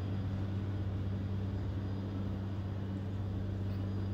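A steady low hum, unchanging, over a faint even background noise.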